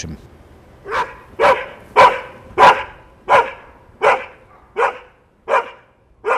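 A dog barking about eight times in a steady series, roughly one bark every 0.7 seconds.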